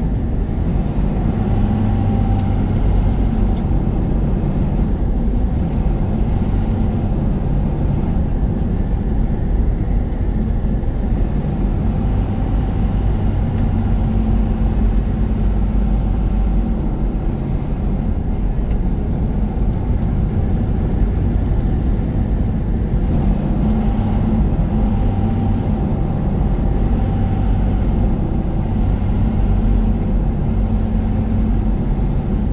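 Semi-truck heard from inside the cab while driving: a steady drone of engine and road noise, its engine hum growing stronger and easing off at times.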